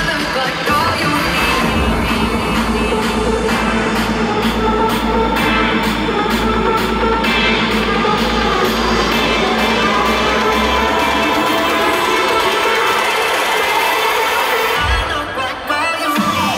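Loud live electronic dance music over a concert sound system, heard from within the crowd. A steady deep bass runs until about eleven seconds in, then cuts out for a build-up.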